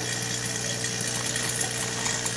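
EcoPlus Commercial Air 1 air pump running with a steady hum.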